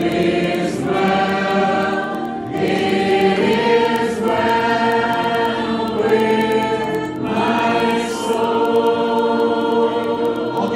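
Church congregation singing a hymn chorus together, in long held phrases a few seconds apart.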